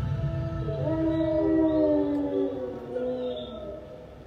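Long howling sound made of several overlapping pitched tones. It starts about half a second in, slides slowly lower, and fades away near the end.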